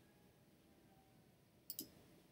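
Near silence: faint room tone, with a quick double click near the end, as of a computer mouse button.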